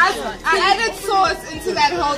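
Lively chatter: several people talking and calling out over one another.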